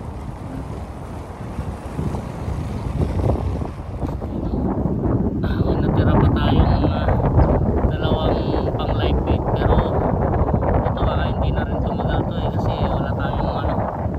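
Strong wind buffeting the microphone in a steady, heavy rush, louder from about four seconds in.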